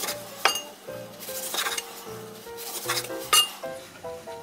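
Kitchen knife cutting cherry tomatoes in half on a wooden cutting board: a few separate cuts, each ending in a sharp knock of the blade on the board, the clearest about half a second in and near the end.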